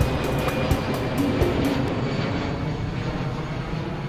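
Twin-engine jet airliner flying over, a steady rushing engine noise that eases slightly in the second half.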